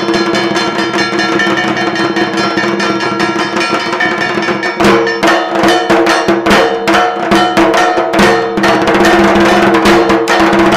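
Percussion-led music: drums and fast metallic clanging over steady held tones. The strikes become louder and sharper about five seconds in.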